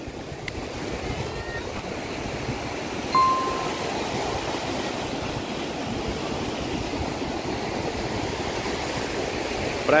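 Surf breaking and washing up a sandy beach, a steady rushing of water. A short, clear single tone sounds about three seconds in.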